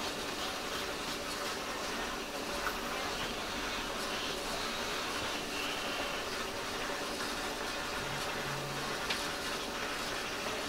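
Steady hum and hiss of hospital room equipment, with a couple of faint ticks.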